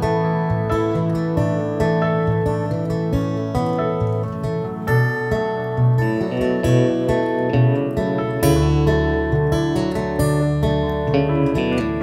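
Live acoustic-guitar-led band music with no singing: strummed and picked acoustic guitar over keyboard chords and electric guitar. A deep sustained bass note comes in about eight and a half seconds in.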